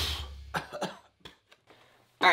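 Guitar music fading out, then a man coughing a few short times in a cloud of sawdust.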